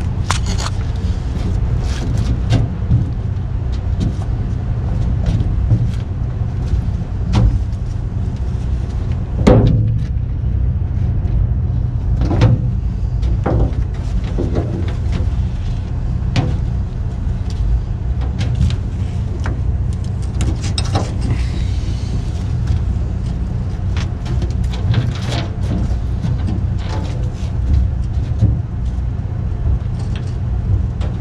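A steady low engine idle, with scattered clinks and knocks as ratchet straps and their metal hooks are handled, the loudest knock about nine seconds in.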